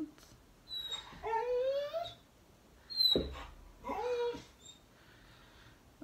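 Dog whining: a long rising whine about a second in and a shorter one a little after the middle, with a sharp knock in between.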